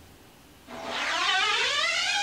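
Scoop coater sliding up the mesh of a screen-printing screen, laying on photo emulsion. From about two-thirds of a second in, a squeaky tone rises steadily in pitch as the coater travels up.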